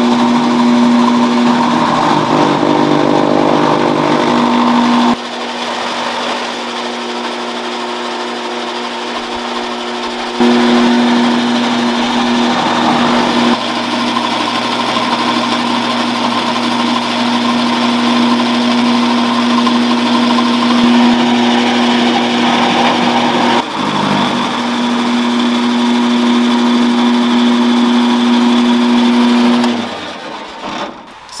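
Electric grass chopper machine running with a steady hum while fresh grass is fed into its blades. It cuts off at the very end when its push-button switch is pressed.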